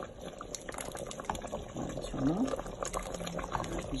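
Thick meat-and-onion sauce bubbling at a steady boil in a pot on a gas stove, with many small irregular pops.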